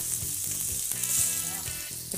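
Sliced turkey frying in a skillet, with a steady sizzle.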